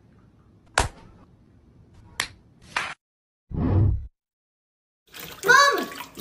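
Three sharp hand slaps on a person's body, about a second in, just after two seconds and again half a second later, then a duller thump at about four seconds. A voice starts near the end.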